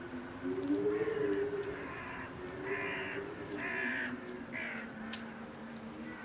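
A crow cawing about five times in a row, over a low, sustained music drone.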